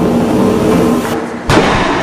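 Film-trailer soundtrack: a held music chord dies away about a second in, then a single loud boom-like impact hit lands at about a second and a half and rings on.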